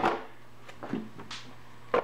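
A few light clicks and knocks as parts at the tail of a 1985 BMW K-series motorcycle are handled to reach the storage box, over a steady low hum.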